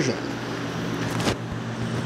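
Steady low background hum and hiss, with a light knock about a second in and another near the end.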